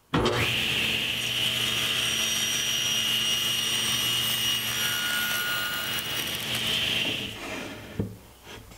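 Table saw with its blade tilted to about 8 degrees, bevel-cutting a test strip of wood: a steady cutting noise with a high whine over the motor hum, falling away near the end.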